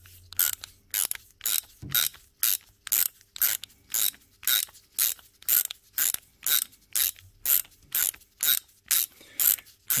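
Socket ratchet wrench clicking in short, even bursts, about two a second, as a bolt that came undone easily is wound out by hand.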